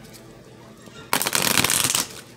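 A deck of oracle cards being shuffled by hand: about a second in, a loud, rapid fluttering rattle as the cards riffle off the thumb, lasting nearly a second.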